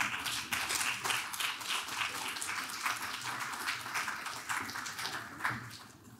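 Audience applauding, many hands clapping steadily and then dying away near the end.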